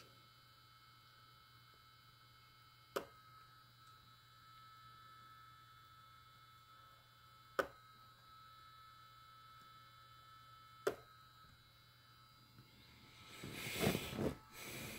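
Malectrics Arduino spot welder firing through handheld probes onto nickel strip on a battery pack: three short, sharp snaps, a few seconds apart.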